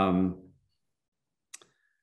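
A man's drawn-out hesitation 'um', then silence, then one short click about one and a half seconds in, just before he speaks again.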